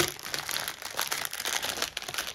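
Clear plastic bags crinkling as hands push through and shift a packed bag of small drill packets, in quick, irregular crackles.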